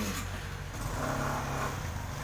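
A motor vehicle's engine running, a steady low hum that swells louder about a second in.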